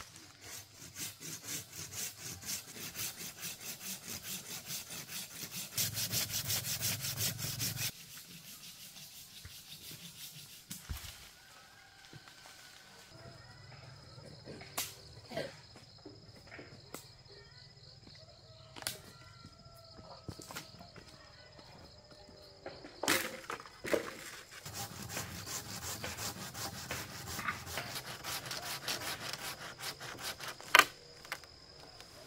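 Hand pruning saw cutting through green wood in quick, even strokes, loudest just before the sawing stops about eight seconds in. Then comes a quieter stretch with a few sharp clicks and a steady high tone, and the sawing starts again near the end.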